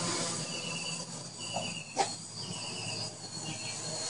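Insects chirping in repeated pulses about half a second long, over the faint steady hum of a small quadcopter's electric motors and propellers in flight. One sharp click about halfway through.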